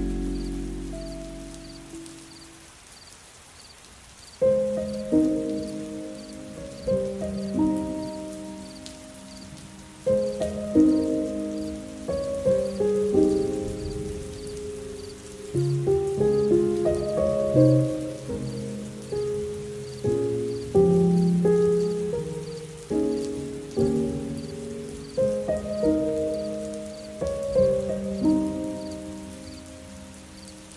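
Slow, soft solo piano playing single notes and chords that ring and decay. A chord fades out in the first seconds, and the piano resumes about four seconds in, over a faint steady hiss like rain ambience.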